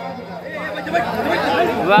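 Several voices talking and calling out at once, with no music playing; a louder voice, likely over the microphone, cuts in near the end.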